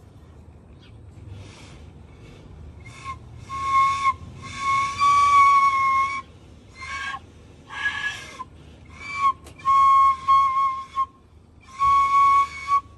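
Carved wooden pūtōrino blown across its top end like a flute: a string of breathy, airy notes mostly at one pitch. Some notes are short puffs and others are held, the longest for about a second and a half in the middle, with one lower, breathier note just after it.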